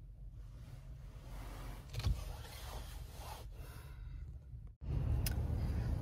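Low steady hum inside a parked car's cabin, with a sharp click about two seconds in. The hum drops out briefly near the end, then comes back louder.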